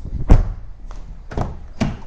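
Car door shutting with a solid thunk, followed by two smaller clicking knocks as another door's latch is released and the door swung open.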